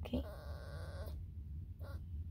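Small dog whining: one wavering high-pitched whine lasting about a second, then a brief short squeak near the end, over the low steady rumble of a car cabin.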